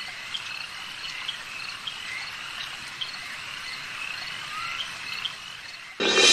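Night chorus of frogs and crickets: a steady insect hiss with short chirps recurring about every half second.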